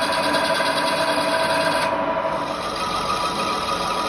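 Metal lathe running with a steady whine, turning a brass part. About two seconds in, the sound thins and its pitch shifts a little higher.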